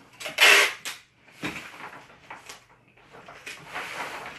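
Large sheet of brown kraft paper rustling and crinkling as hands press and smooth it, with one loud crinkle about half a second in and softer rustles after.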